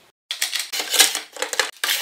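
Metal rip fence of a Metabo TS 254 table saw being handled and slid along its front rail: a dense run of hard clicks and rattles that starts a moment in, with a brief break near the end. The saw is not running.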